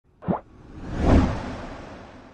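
Logo-animation sound effects: a short falling plop about a third of a second in, then a whoosh that swells to a low boom about a second in and slowly fades.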